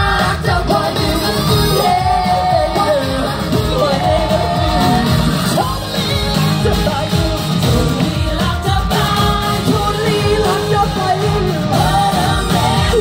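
Live pop music from a stage sound system: a steady dance beat with several singers singing into microphones.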